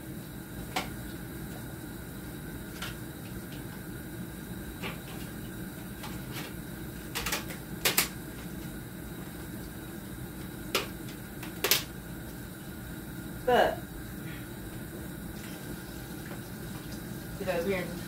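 Kitchen clean-up sounds: scattered light knocks and clicks of dishes and utensils being handled, about eight in all, over a steady low hum of room noise, with one brief pitched squeak-like sound past the middle.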